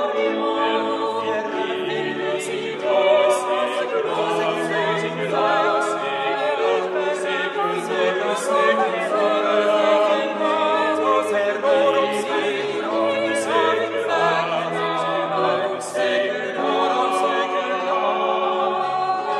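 Small vocal ensemble singing a five-voice early Baroque motet, several voices holding sustained, overlapping lines in polyphony.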